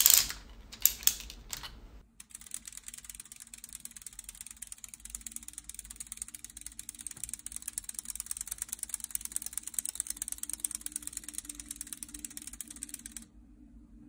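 3D-printed plastic clockwork gear train running, giving a rapid, even stream of light plastic clicks that grows a little louder toward the middle and cuts off suddenly about a second before the end. A few separate handling clicks come just before it starts.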